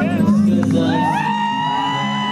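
Dance music playing loud; about a second in, several high voices in the crowd rise together into a long held whoop over it.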